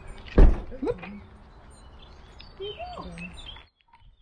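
A single heavy thump about half a second in, followed by short voice sounds over a faint outdoor background; the sound cuts out abruptly shortly before the end.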